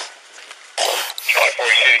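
Men's raised voices, with a sudden burst of noise about a second in.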